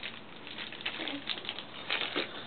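Clear plastic stacking storage containers in a plastic bag being handled and set down: light crinkling with a handful of small, irregular clicks and taps.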